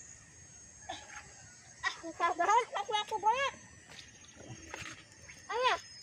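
A child's high-pitched wordless squeals and exclamations: a quick run of them about two seconds in, and one more near the end.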